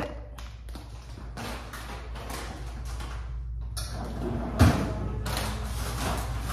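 Quiet handling noises, then a single loud thud a little past halfway at the bottom freezer drawer of a French-door refrigerator, as a bag of frozen chicken is put away.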